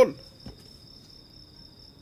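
A faint, steady high-pitched whine, with a fainter second tone a little lower, holding unchanged through the pause.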